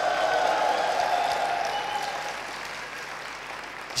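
Theatre audience applauding and cheering in reply to a greeting from the stage, loudest in the first second or two and then slowly dying down.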